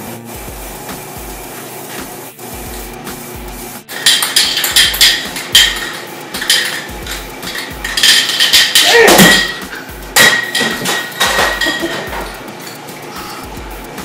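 Aerosol spray-paint cans: the mixing ball rattling in rapid clicks as a can is shaken, and bursts of spray hiss, starting about four seconds in. Background music with a steady bass beat runs underneath.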